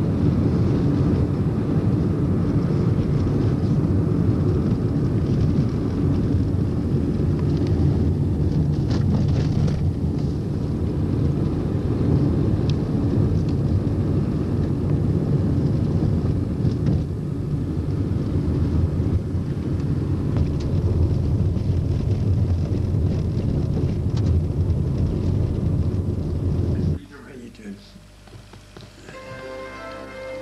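Steady low rumble of a moving vehicle, road and wind noise picked up by a handheld camcorder filming from it, cutting off suddenly near the end.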